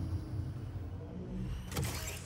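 Sci-fi ground car sound effect: a low motor hum fading as the car slows down, then a short hiss near the end.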